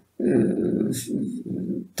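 A man speaking in a low voice, one continuous phrase with a short hiss about halfway through.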